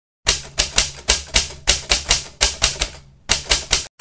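Rapid typing on a computer keyboard, about five clacking keystrokes a second, with a short pause near the end.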